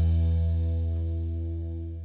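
The last chord of a rock band's song ringing out and fading steadily: held bass and guitar notes sustain while the cymbal wash dies away.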